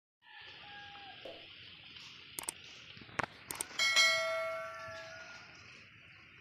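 Subscribe-button sound effect: a few quick clicks, then a bright bell ding about four seconds in that rings out and fades over a second or so. Under it runs a steady high drone of insects.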